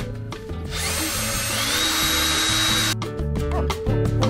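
Cordless Bosch drill-driver backing screws out of a wooden bed frame: its motor whine rises, then holds steady for about two seconds and stops suddenly.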